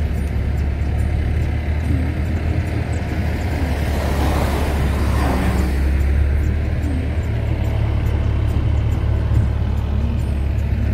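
Steady low rumble of a car's engine and tyres, heard from inside the cabin while driving slowly. A rushing noise swells and fades about halfway through.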